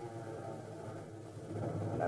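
Propeller aircraft engines droning steadily.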